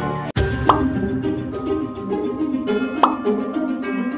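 Background music cuts off abruptly with a sharp click and a new, light music track starts, with two short rising pops over it about two seconds apart.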